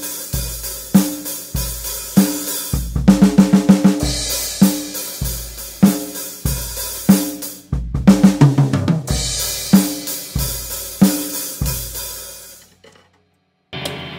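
A drum kit played in a steady beat, broken twice by quick drum fills that start with a bass drum stroke; each fill lands on a crash cymbal, and the second runs down the toms, falling in pitch. The playing stops and the cymbals ring out and fade about a second before the end.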